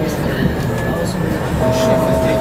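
Vienna U-Bahn train running over a bridge, a steady low rumble of wheels and running gear. Near the end a steady electric whine sets in.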